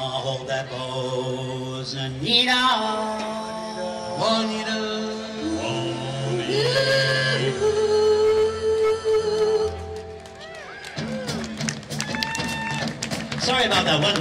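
Live doo-wop vocal group singing in close harmony over a backing band, holding long chords over a stepping bass line. About ten seconds in the music thins out briefly and a voice carries on over lighter accompaniment.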